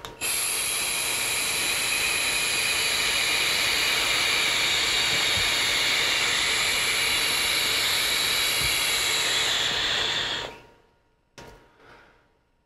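Long drag on a Horizon Arctic sub-ohm tank with a bottom turbo dual coil, fired at 40 watts. It gives a steady airy hiss of air rushing through the tank's wide-open air holes for about ten seconds, then stops.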